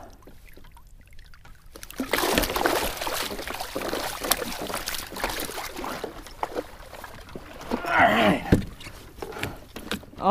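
Water splashing and rushing against the kayak's hull as a sailfish, held by its bill, is released and swims off, loudest about two to six seconds in. A brief vocal sound from the angler comes near the end.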